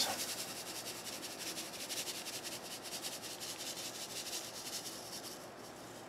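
White washed sand poured from a plastic cup into a tall tube of water: a fine, dense hiss of grains hitting the water, fading gradually toward the end.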